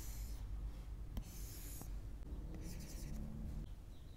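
Stylus nib drawing on an iPad's glass screen: three scratchy strokes, with a couple of light taps of the tip between them.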